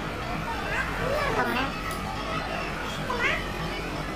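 Young girls' voices: high-pitched sliding vocal sounds rather than clear words, twice, over a steady background hum.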